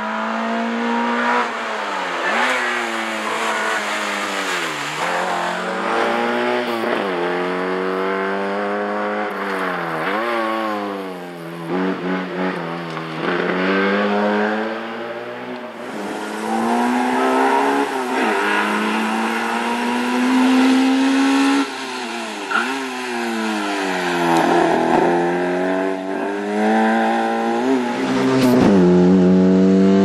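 Peugeot 205 Rallye's four-cylinder petrol engine driven flat out, revving up and dropping back again and again every few seconds as it accelerates and brakes between the cones of a slalom. It gets louder near the end as the car comes closer.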